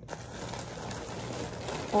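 Plastic mailer bag and garment wrapping rustling steadily as items are pulled out of it.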